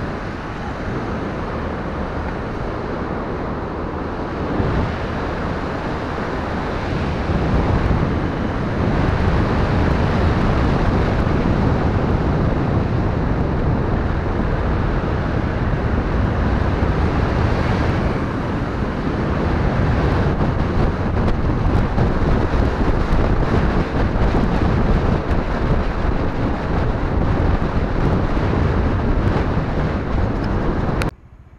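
Wind buffeting the built-in microphone of a moving action camera, mixed with road and vehicle noise; it grows louder about eight seconds in.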